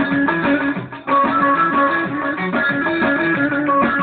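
Bağlama (long-necked Turkish saz), amplified, playing a quick plucked folk melody with a short break about a second in.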